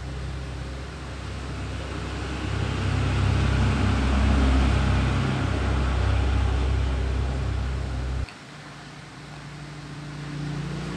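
A low, steady motor hum that grows louder through the middle and cuts off suddenly about eight seconds in.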